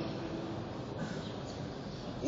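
A breath pause in a man's amplified Quran recitation, leaving the steady hiss of the sound system and the room noise of a large, echoing prayer hall.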